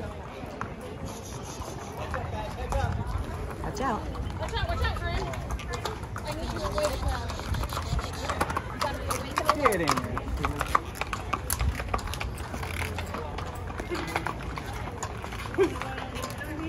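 Hooves of Texas longhorn cattle and a horse clopping on brick pavement as the herd walks past, with many short sharp clicks, under steady crowd chatter.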